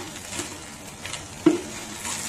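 Jianbing crepe sizzling on a hot electric griddle pan while a wooden spatula scrapes and knocks against it as the crepe is rolled up. There are a few light knocks, the loudest about one and a half seconds in.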